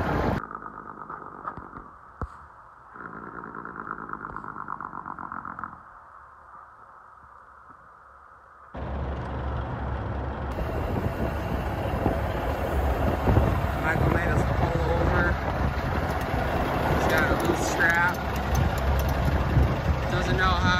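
A muffled stretch, then from about nine seconds in the steady low rumble of a semi truck's engine and road noise on the move.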